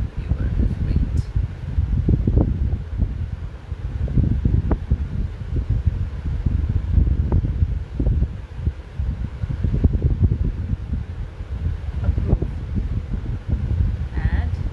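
Low rumbling air noise on the microphone, rising and falling irregularly in loudness.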